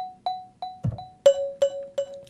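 Marimba notes heard only as echoes from a digital delay plugin, with the dry signal turned off. Each note repeats about three times a second, softer with every repeat, and a lower note takes over just after a second in. There is a single low thump just before the lower note.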